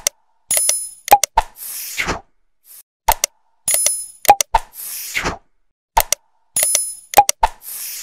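Sound effects of an animated like-and-subscribe end screen: a quick series of clicks and pops with bright chime-like dings, then a falling whoosh. The set plays three times, about three seconds apart.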